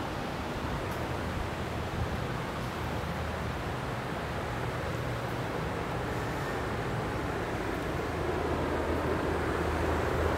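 Steady background hum and noise of a vehicle maintenance garage, with a low drone, growing slightly louder near the end.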